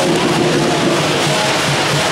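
Loud, continuous Chinese dragon-dance percussion of drum, gongs and cymbals, played without a break.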